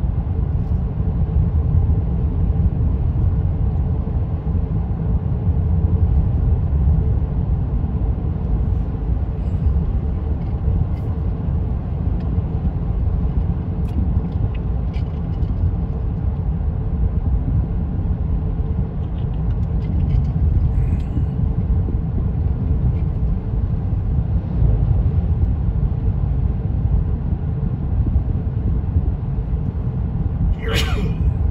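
Steady low rumble of a car driving along at road speed, heard from inside the cabin: tyre and engine noise.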